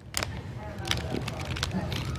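Light clicks and knocks of plastic action-figure dolls being handled and spun against a desk, with faint voices underneath.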